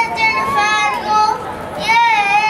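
A young boy singing unaccompanied into a microphone: long held high notes, with a slide up and back down in the first second and a fresh note starting near the end.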